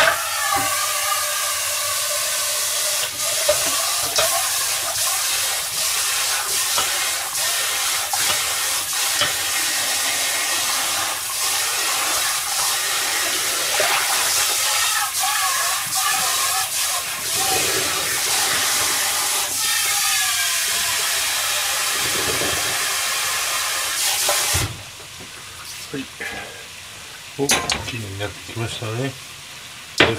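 Sauce and vegetables in a frying pan on a gas burner sizzling and bubbling hard as the liquid boils down. About 25 seconds in it drops suddenly to a much quieter low bubbling, with a few knocks near the end.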